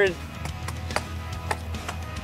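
A few short, light knocks as a compressed earth block is set into place on top of a block wall, over a low steady background hum.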